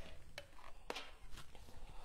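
A few light clicks and taps of small objects being handled, the sharpest about half a second apart, as a paint tray and painting tools are picked up.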